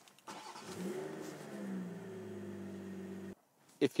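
BMW M340i's turbocharged straight-six petrol engine started by push button: it cranks, catches with a brief rise in revs, then settles to a steady idle. The sound cuts off suddenly just after three seconds in.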